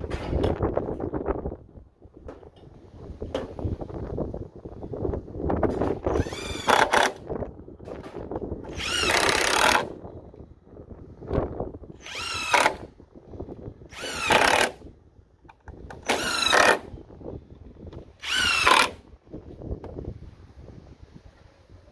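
DeWalt cordless driver driving screws into pressure-treated wood: six short runs of the motor, each a whirring whine of about a second with its pitch bending as the screw goes in. There are a few lighter knocks and handling noises at the start.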